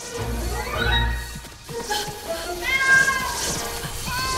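Cartoon kitten meowing, one drawn-out meow that rises and falls about three seconds in, over background music. A low rumble sounds during the first second.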